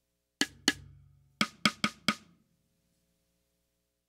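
Six sampled snare-drum hits from the BFD3 drum plugin's Tama Bell Brass snare: two, then a quicker run of four. A low hum from the toms resonating in sympathy, with the tom-resonance trim turned full up, rings under and after the hits.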